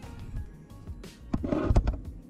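Background music playing quietly, then a loud cluster of knocks and rumbling handling noise near the end as the handheld camera is swung around.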